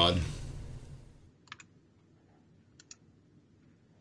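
Two quick double clicks at a computer, about a second and a third apart, with near silence between them.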